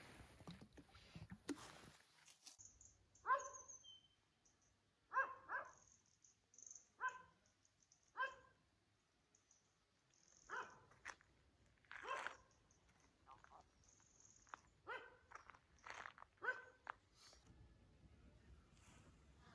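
A dog barking faintly: about a dozen short single barks, spaced unevenly with pauses between them.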